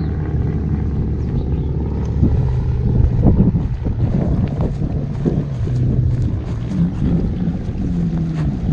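Wind buffeting the microphone, with the steady low hum of a power wheelchair's drive motors as it drives across grass.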